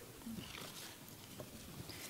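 Faint rustling and a few light taps as artificial evergreen picks are lifted and handled.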